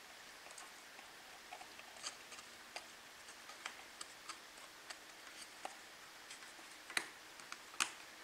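Faint, scattered small clicks and taps of thin wooden model-kit pieces being handled and pressed onto a model ship's frame, with two sharper clicks near the end.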